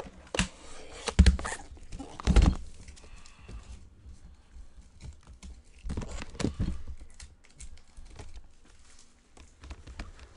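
Computer keyboard being typed on in irregular bursts of clicks, with a couple of louder knocks in the first few seconds and another burst of typing about six seconds in.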